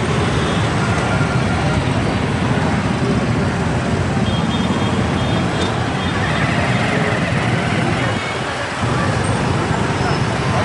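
Dense, slow street traffic, mostly motorcycles and cars running together in a steady low rumble, with voices from the crowd mixed in. The sound drops briefly about eight seconds in.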